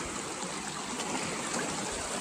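Shallow stream rushing over rocks in small rapids: a steady, even rushing of water.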